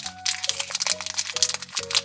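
Thin shiny plastic wrapper crinkling as hands pull it open, a quick run of crackles, over background music with held notes.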